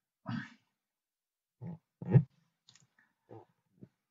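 A few short, low vocal grunts in a row, the loudest about two seconds in, with a faint click or two between them.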